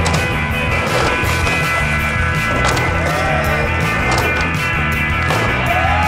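A music track plays over skateboard sounds: urethane wheels rolling on street asphalt, with the board knocking on landings and on a small box ramp.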